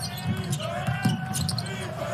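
Basketball dribbled on a hardwood court, a few sharp bounces over the murmur of an arena crowd.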